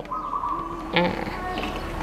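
Birds calling: a steady high note held for most of the first second, then a short lower call about a second in.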